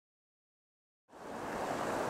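Silence, then about a second in a steady outdoor background noise fades in, an even hiss with no distinct events.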